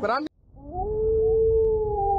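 Wolf howl sound effect: one long howl that rises in pitch about half a second in and then holds steady.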